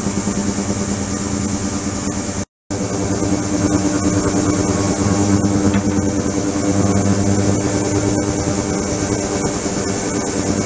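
Ultrasonic cleaning tank running: a steady buzzing hiss from the ultrasonically agitated water, with a low hum beneath it. The sound cuts out for a moment about two and a half seconds in, then carries on unchanged.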